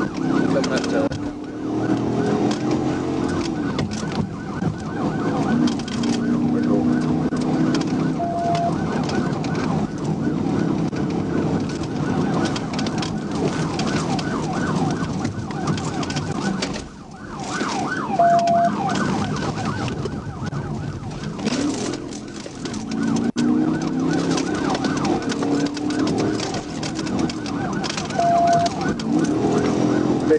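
Police cruiser siren sounding during a pursuit, heard from inside the car, its pitch sweeping up and down in wail and faster yelp cycles over engine and road noise at highway speed. A short beep sounds about every ten seconds.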